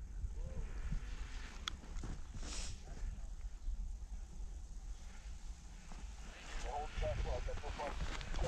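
Distant rallycross car running across the snowy course, heard under heavy wind rumble on the microphone. A sharp click comes about two seconds in, and people talk briefly near the end.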